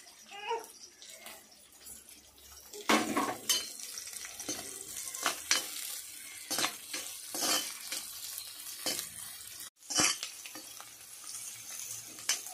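Chopped shallots and green chillies sizzling in oil in a kadai, stirred with a metal spatula that scrapes and clinks against the pan. The sizzling and stirring start loud about three seconds in and continue with frequent sharp scrapes, briefly cutting out near the end.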